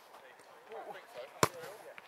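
A single sharp smack of a football impact about one and a half seconds in, over faint shouts of players across the pitch.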